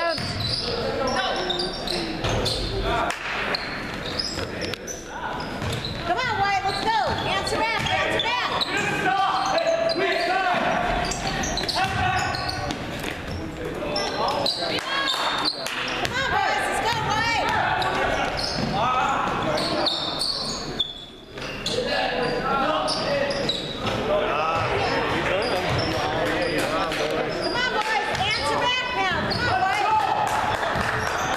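Basketball being dribbled on a hardwood gym floor during a game, with repeated bounces and players' footsteps, mixed with voices calling out in the large echoing gym.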